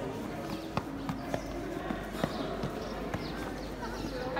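Footsteps on stone paving, irregular sharp steps a few times a second, over the background voices of a group walking.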